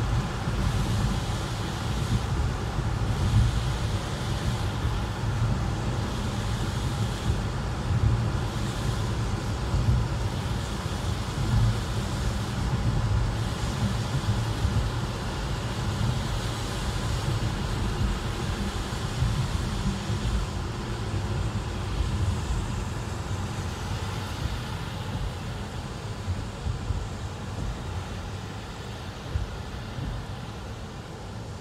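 Road noise inside a moving car in the rain: a steady low rumble from the engine and tyres on wet pavement, with a hiss of water spray. It fades a little near the end.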